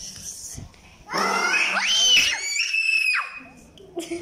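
A child screams: a very high-pitched shriek that starts about a second in, rises, and holds for about two seconds before breaking off.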